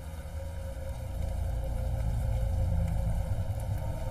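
Recorded rain ambience: a steady hiss of rain over a deep, low rumble, swelling slightly in the first second.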